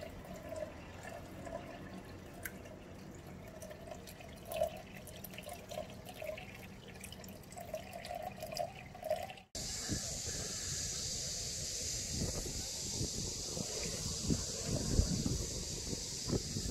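Water trickling and dripping through a siphon tube from a bucket into an aquarium, cut off abruptly about nine and a half seconds in. Then a steady outdoor hiss with wind gusting on the microphone.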